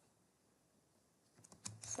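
Near silence, then a quick run of computer keyboard keystrokes starting about a second and a half in.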